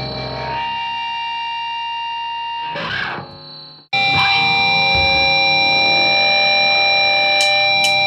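Distorted electric guitar ringing out held chords in a grindcore recording. It drops almost to silence just before the middle, then comes back louder with a new sustained chord.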